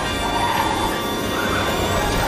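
Dramatic film-score music with crash sound effects of a race car losing control and skidding sideways, with swells of tyre noise.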